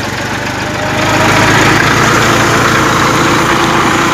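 Massey Ferguson 241 DI tractor's three-cylinder diesel engine running steadily at about 1100–1200 rpm, driving a mustard thresher through the PTO. The combined engine and thresher noise grows louder about a second in and holds.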